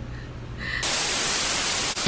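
A burst of loud TV-style white-noise static, used as a VHS-effect video transition. It starts about a second in, after a quiet moment of room hum, and cuts off suddenly near the end.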